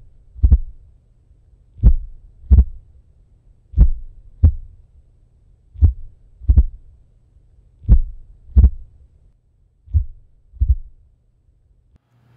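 A slow heartbeat sound, its paired lub-dub thumps coming about every two seconds over a faint low hum. The last pair is fainter.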